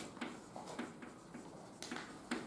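Chalk writing on a chalkboard: a quick series of short scratches and taps as letters are written, with the sharpest tap right at the start and another near the end.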